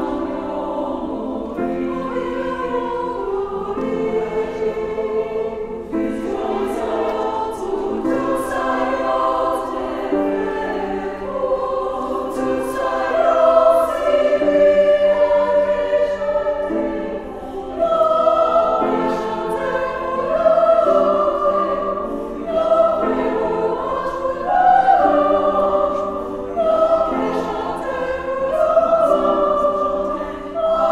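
Women's choir singing in several parts, in Haitian Creole, with sustained chords that change every second or two and swell louder in the second half.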